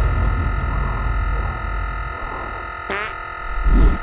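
Trailer sound design: a held, distorted synthesizer drone made of several steady tones, with a quick rising pitch sweep about three seconds in and a low rumbling swell, the loudest moment, just before the end.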